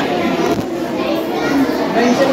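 Many children's voices chattering and calling out together, overlapping.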